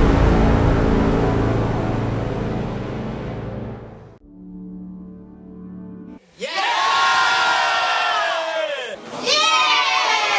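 A deep cinematic boom that fades over about four seconds, then a brief low steady tone. About six seconds in, a group of people shouts a cheer together, the voices falling in pitch, and near the end a second, higher-pitched group cheer starts.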